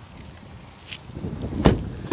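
Rustling and wind on the microphone, building about a second in, then one sharp knock from the SUV's door.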